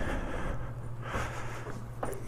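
A man's two long, heavy exhales, frustrated sighs at finding the motorcycle's battery dead, over a steady low hum.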